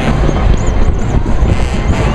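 Wind buffeting the microphone, a loud, low rumbling noise with no clear tones, over general street noise.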